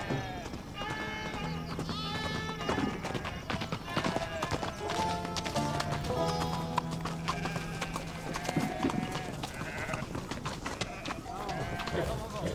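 Busy livestock camp sounds: sheep bleating, horse hooves clip-clopping and indistinct voices of a crowd, with background music underneath.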